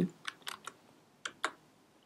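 Typing on a computer keyboard: a quick run of about four keystrokes, then two more about a second in, the last the loudest.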